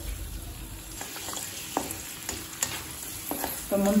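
Cashew nuts and raisins sizzling in hot ghee in a kadai, stirred with a wooden spatula that knocks lightly against the pan several times.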